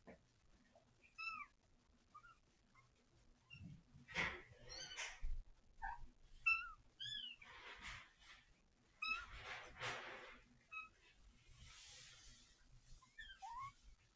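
Kittens mewing: short, high, bending calls, repeated at irregular intervals, with brief rustling noises between them.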